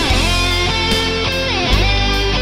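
Heavy metal music with a distorted electric guitar playing a lead line. The guitar drops sharply in pitch twice, just after the start and again about a second and a half in.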